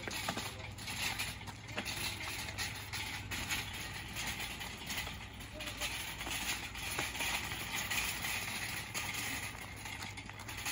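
Steel-mesh garden wagon rolling over a gravel driveway: its tyres crunch steadily on the gravel, with scattered sharp clicks and rattles from the loose cart frame.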